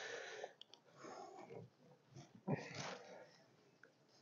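A person's quiet breaths close to the microphone, about three soft exhalations a second or so apart.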